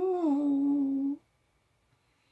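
A woman's voice holding one long drawn-out note, its pitch rising a little and then staying level, cutting off just over a second in.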